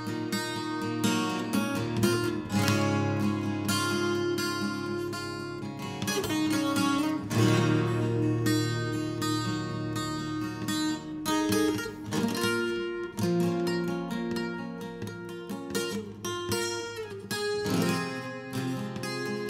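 A 12-string acoustic guitar played solo, with plucked, ringing chords that change every few seconds in an unhurried instrumental passage.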